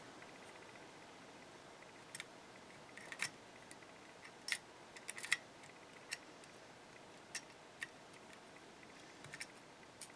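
Faint, scattered clicks of a small key being pushed into and turned in a brass heart-shaped trick padlock, about seven light ticks a second or so apart.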